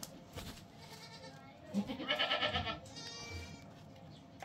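A goat bleating once, a loud wavering call about two seconds in, followed by a fainter, higher call a second later.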